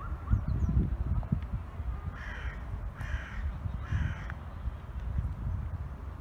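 A bird calling three times, each call about half a second long and the calls about a second apart, over a steady low rumble.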